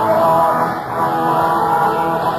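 Blues-rock band playing a boogie, recorded live.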